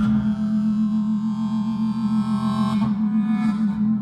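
Live folk music: a sustained shruti box drone with a harmonica played over it, its held note wavering several times a second.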